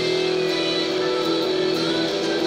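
Electric guitar playing a rock song, chords held steady.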